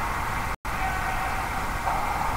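Steady background noise of a hockey rink, heard through the game recording, broken by a brief total dropout about half a second in.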